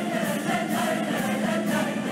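A choir singing a march with a symphony orchestra, on a steady beat about twice a second.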